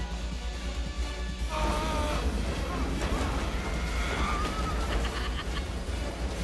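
Film score music over a steady deep rumble from the shuttles' rocket boost. Sustained, wavering tones enter about one and a half seconds in.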